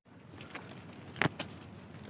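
Footsteps on a sandy path and brushing through mangrove undergrowth: a quiet outdoor hiss with a few sharp crackles, most of them just past a second in.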